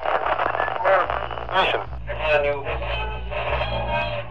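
Tinny, narrow-sounding voices like an old radio or television broadcast, warbling and sliding in pitch, over a steady low hum.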